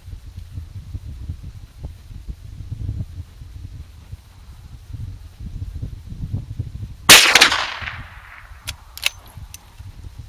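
A single shot from a Marlin 1894 lever-action carbine in .357 Magnum about seven seconds in, the loudest thing heard, with a ringing tail lasting most of a second. It is followed by three short metallic clicks as the lever is worked to chamber the next round, over a low wind rumble on the microphone.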